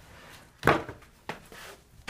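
A sharp knock with a brief ring, then a lighter knock about half a second later, followed by a faint scuff.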